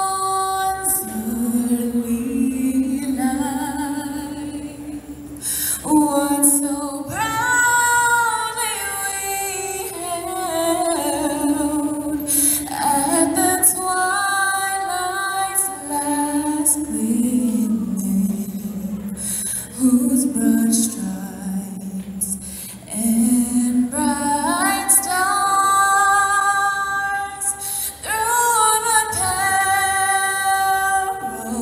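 A woman singing solo into a microphone over a hall's sound system, unaccompanied, holding long notes that slide between pitches, with a few short breaks for breath.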